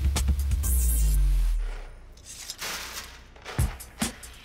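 Background music for a TV documentary, with a heavy low rumble that falls in pitch and fades out about a second and a half in. A quieter stretch with a few short hits follows near the end.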